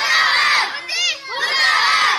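A group of schoolchildren shouting a slogan together in loud bursts about a second long. One higher, single voice calls out between the group shouts, in a call-and-response chant.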